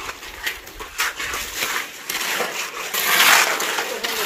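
Shovels and a hoe scraping through wet concrete as it is spread, in repeated rasping strokes, the longest and loudest about three seconds in.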